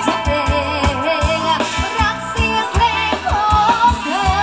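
Live band playing Thai ramwong dance music: singing over a steady drum beat of about four beats a second.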